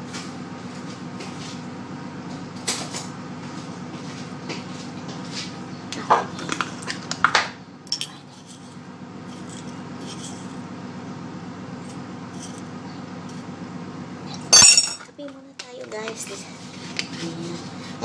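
Clinks and knocks of a spoon, jar and glass mug on a stone counter as coffee is made, over a steady low hum. A scattering of light clicks comes in the first half, and a single loud clatter comes about 15 seconds in.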